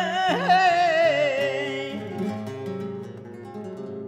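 Male flamenco singer holding a wavering, ornamented sung line that trails off about a second and a half in, over flamenco guitar accompaniment on a nylon-string acoustic guitar. The guitar carries on alone, growing quieter toward the end.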